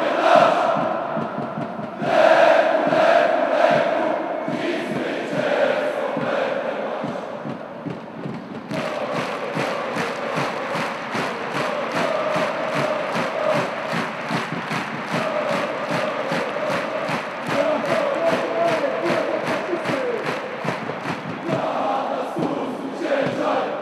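A stand of thousands of football supporters chanting in unison. About nine seconds in, steady rhythmic hand-clapping, about three claps a second, starts up under the singing and keeps time with it.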